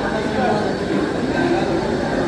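Railway platform ambience: a steady noisy din of a train and station machinery, with the voices of passengers mixed in.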